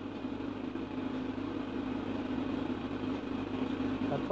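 Steady low hum with faint hiss and no voice: the silent line of an answered incoming call.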